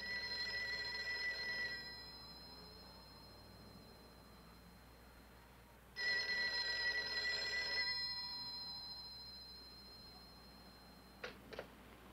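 Telephone bell ringing twice, each ring about two seconds long with a fading tail, about four seconds apart. Near the end come two short clicks as the handset is picked up.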